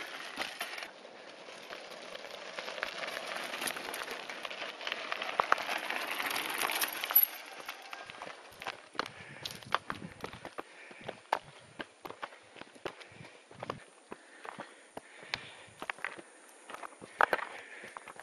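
A steady gritty rushing of knobby bike tyres rolling over a gravel dirt track, then, from about eight seconds in, irregular crunching footsteps and clicking stones as people walk up a rocky trail.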